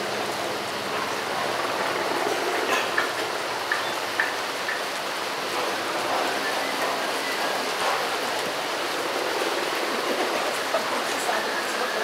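Heavy rain falling steadily, with a few sharp taps scattered through it, mostly in the first few seconds.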